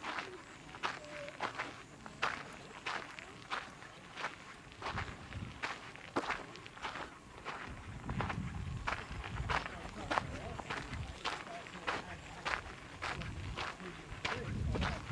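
Footsteps on a red-dirt walking track with loose stones, at a steady walking pace of about three steps every two seconds. A low rumble joins from about five seconds in.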